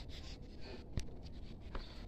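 Faint rustling, with a light click about halfway through and a softer one near the end, from someone moving with a handheld camera through dry garden litter.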